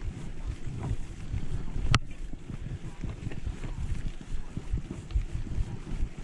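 Wind buffeting a mountain bike's on-board camera microphone as the bike rolls over a dirt singletrack, a constant low rumble with irregular surges. One sharp knock from the bike about two seconds in.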